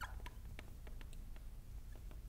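Marker tip on a glass lightboard, making a string of short, faint squeaks and ticks as letters are written, over a low steady hum.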